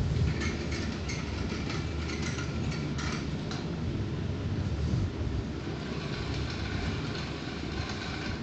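Small geared DC motors of a wheeled robot running as it drives across a hard tiled floor, with a steady low rumble and a run of light clicks and rattles in the first few seconds.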